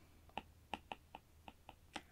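Faint, uneven clicks of a stylus tip tapping on a tablet screen while handwriting, about seven light ticks.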